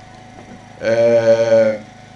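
A man's voice holding one steady, drawn-out vowel for about a second, a hesitation sound between phrases of his speech into a handheld microphone.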